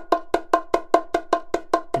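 Bongos struck with the hands in steady eighth notes, about five even strokes a second, each with a short pitched ring. The strokes are played loud.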